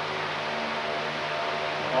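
Steady background hum and hiss with a few constant low tones, unchanging and without any distinct event.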